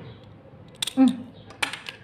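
Small handheld stapler clicking as it is squeezed through a stack of folded pandan leaves: one sharp click just before a second in and a second, noisier one near the end.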